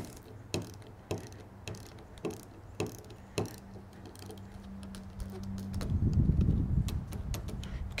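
Ratcheting torque wrench clicking about twice a second as it tightens the 8 mm nuts on the injector retainer plate of a GM CSFI fuel meter body toward 27 inch-pounds. A low rumble comes in near the end.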